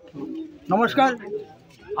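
A man speaking loudly in short phrases, with a lull of under a second before he goes on.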